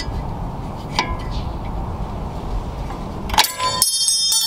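A flathead screwdriver prying at the front retaining spring of a BMW F30 sliding brake caliper, with a low scraping rumble and a couple of clicks. About three and a half seconds in comes a sudden metallic clang with ringing as the spring snaps free.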